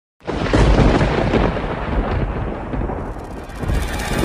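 Thunder rumble sound effect, starting suddenly and slowly easing off.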